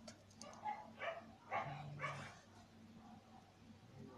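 A dog barking faintly: four or five short barks in the first half, then it stops.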